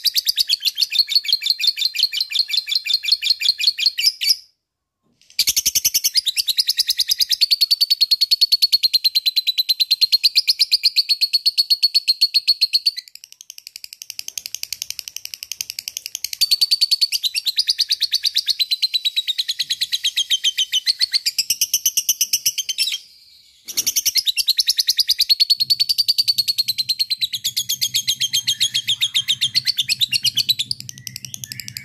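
Caged yellow lovebird singing its long 'ngekek' chatter: long, rapid runs of high, evenly repeated notes. There is a brief pause a few seconds in, a softer stretch in the middle, and another short break about three quarters of the way through.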